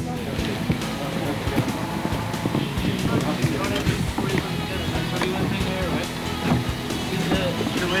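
Indistinct men's voices talking while they work, over a bed of background music.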